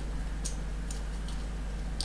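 A few faint light clicks as a small bead and stiff jewelry wire are handled and threaded, over a steady low hum.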